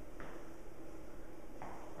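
Two soft footfalls of running shoes landing on a rubber gym floor during walking lunges, about a second and a half apart, over low room noise.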